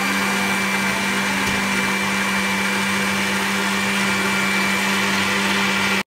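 Electric countertop blender running steadily while blending banana juice, a constant motor hum with a thin high whine over it.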